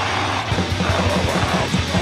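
A heavy rock song with distorted guitar and a drum kit. Fast, even drum hits come in about half a second in over steady held guitar and bass notes.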